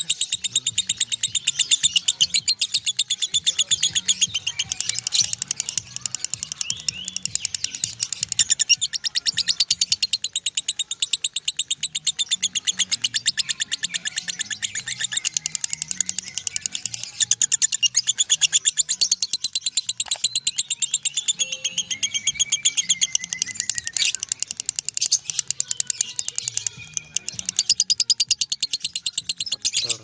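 A lovebird's ngekek: a long, unbroken run of rapid, shrill chirps, many to the second, kept up without a pause and stopping right at the end.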